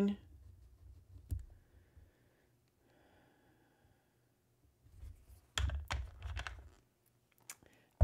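Scattered clicks and light knocks of small objects being handled: a single click about a second in, then a cluster of clicks and soft thumps from about five and a half to seven seconds in, and one more click near the end.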